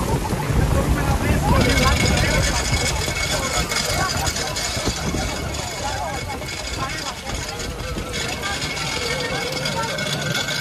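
Heavy rain and gusting wind over choppy water on a boat in a storm, with wind buffeting the microphone, a steady low engine hum and voices in the background. A steady high whine joins in about one and a half seconds in.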